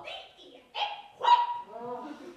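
Two short barks about half a second apart, the second louder.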